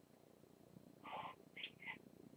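Near silence on a telephone-line audio feed, with three faint, brief voice sounds in the second half as a caller draws breath to start speaking.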